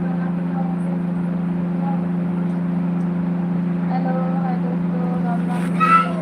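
A steady low electrical or motor hum, one constant pitch with a few higher overtones, with faint voices in the background. Just before the end there is a brief louder burst of handling noise as the phone is moved.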